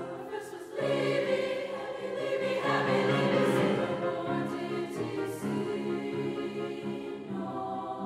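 Treble choir singing in parts, the sustained chords swelling louder about a second in.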